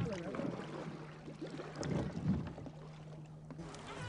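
Ambience aboard a boat on a lake: a steady low hum, with water and wind noise and faint voices in the background.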